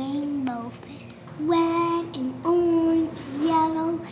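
A young girl singing a wordless tune in long held notes of about a second each, the pitch stepping up about a third of the way in.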